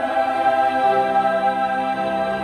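Mixed choir of men's and women's voices singing in harmony, holding long chords that change about halfway through.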